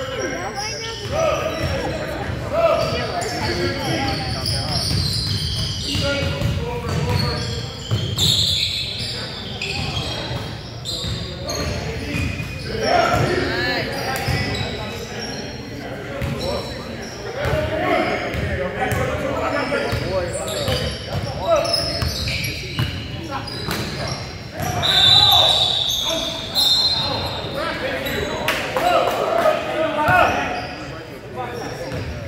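A basketball bouncing on a hardwood gym floor during play, with players' voices and shouts echoing in a large hall. About 25 seconds in comes the loudest moment, a high steady tone lasting a second or two.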